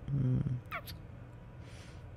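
A man's low, sleepy hum in the first half-second, then a brief high squeak that falls in pitch and a soft breathy hiss near the end.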